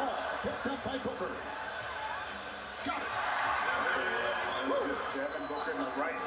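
Indistinct voices over steady arena background noise in a basketball game broadcast, with no clear commentary words.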